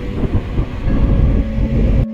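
Loud low rumble of road and wind noise inside a moving car's cabin, with uneven gusts of wind buffeting through a partly open window.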